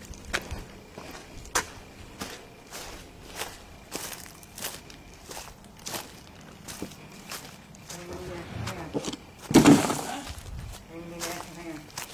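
Footsteps walking at a steady pace over dry leaves and dirt, a crunch about every half second. Brief voice sounds come in late on, with one loud sudden burst of noise among them.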